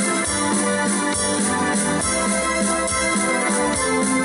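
A live folk dance band playing, with keyboard chords over a steady beat.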